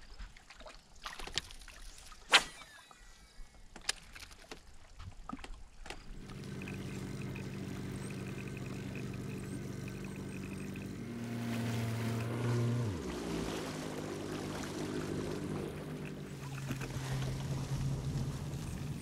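Bass boat's outboard motor running steadily underway, then throttling down with a falling pitch about two-thirds of the way through; near the end a different, lower engine note takes over, the tow vehicle pulling the boat on its trailer. Before the motor starts there are a few sharp knocks and a short laugh.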